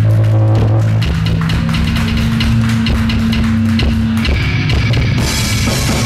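Live metal band playing loud: fast, dense drumming under held low guitar and bass notes that change pitch about a second in and again just past the four-second mark.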